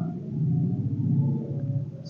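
A person's low, drawn-out wordless hum, swelling and easing off.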